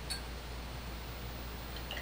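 Faint clinks of a glass test tube against glassware: a brief tick just after the start and a small ringing clink near the end, over a steady low hum.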